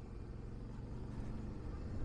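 Suzuki V-Strom motorcycle engine running steadily, a faint low hum under the rider's helmet-mounted mic.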